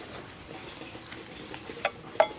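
A plastic spoon stirring lye solution in a glass Pyrex measuring cup, with faint scraping and a light tap near the end. Insects chirp faintly and steadily in the background.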